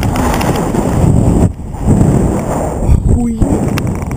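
Loud wind rush buffeting a GoPro's microphone during a rope-jump free fall and swing. The rush dips briefly about a second and a half in and again near three seconds.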